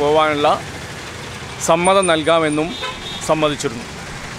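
A man speaking in short phrases over a steady background of passing road traffic.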